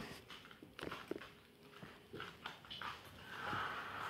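Faint scattered taps and rustles of bare feet on a tiled floor and dolls being handled, with a soft breathy sound near the end.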